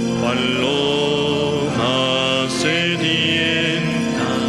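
Slow sung hymn: a melody in long held notes, changing pitch a few times, over steady sustained accompaniment.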